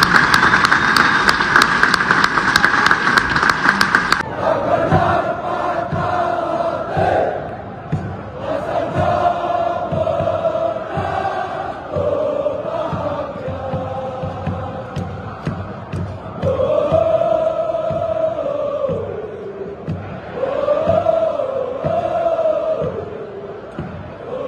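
Applause from a group of people clapping for about four seconds, then a sudden cut to a large crowd of football supporters singing a chant together in long, drawn-out phrases over a regular low beat.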